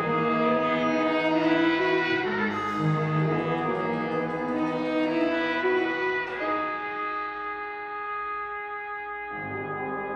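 Student big band playing: saxophones, trumpets and trombones hold long chords over piano. The low horns drop out about two-thirds of the way through, leaving the higher voices quieter, and come back in just before the end.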